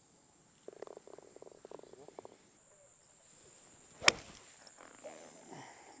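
A golf ball struck by a club about four seconds in: a single sharp crack, the loudest sound here, from a shot that was pulled. Earlier, for about a second and a half, a frog croaks in a quick run of pulses. A steady high insect drone sits under it all.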